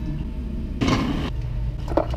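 Steady low hum of kitchen machinery in a commercial bakery, with one short noisy clatter about a second in.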